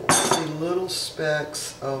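A single sharp tap of a fingertip against the plastic Vitamix blender container, right at the start, followed by a woman's voice.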